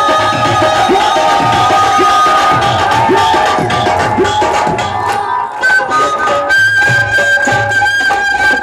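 Bansuri, a bamboo transverse flute, playing a Rajasthani folk melody over a drum beat, ending on a long held high note in the last second or so.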